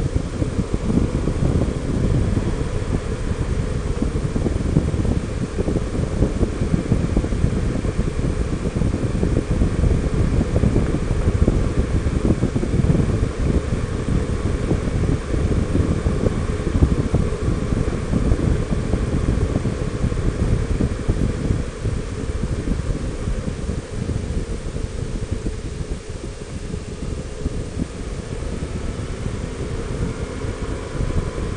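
Steady wind buffeting the microphone of a camera mounted on a Honda Gold Wing 1800 touring motorcycle cruising at highway speed, with the bike's engine and tyre noise running underneath.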